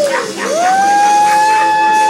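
A long howling cry: a pitch that slides down, swoops back up and holds one steady, high note, over music playing in the room.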